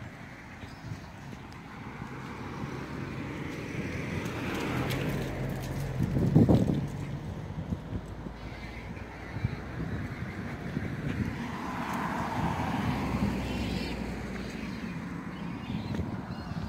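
Street traffic: cars passing on the road, the noise swelling to its loudest about six seconds in and rising again more gently later.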